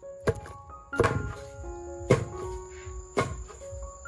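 A long pestle pounding cooked purple sticky rice in a stone mortar: a dull thud about once a second, four strokes in all. Piano music plays underneath.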